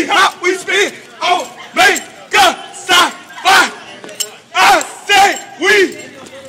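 A group of men giving loud, short shouted calls in a steady rhythm, about two a second, each call falling in pitch, with a brief pause just past the middle. This is the rhythmic barking and chanting of Omega Psi Phi fraternity members.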